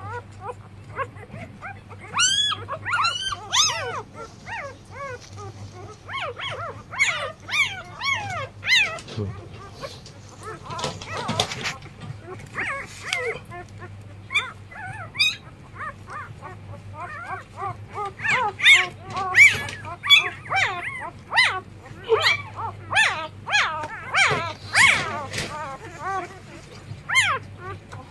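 Border collie puppies whimpering and squealing: many short high cries that rise and fall in pitch, coming in clusters, busiest in the second half.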